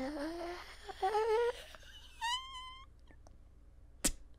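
A man's drawn-out, exasperated moan that trails off, followed by a short rising whimper about a second in and a higher-pitched whine a little past two seconds.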